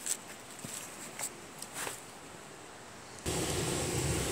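A few faint clicks and rustles of handling. About three seconds in, the sound cuts abruptly to the steady low drone of a pickup truck running, heard inside the cab.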